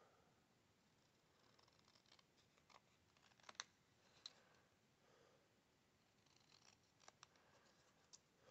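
Faint, scattered snips of small precision scissors cutting card stock, a handful of soft clicks as the blades close, with near silence between them.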